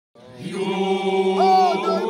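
Voices chanting together in long held notes, fading in over the first half second, with a higher voice gliding in partway through.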